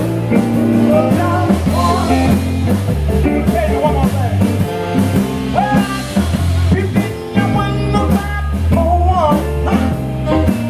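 Live electric blues band playing: electric guitars, electric bass and drum kit.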